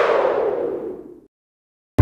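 The tail of a radio show's station jingle: a whooshing sound effect with echo, fading out over about a second.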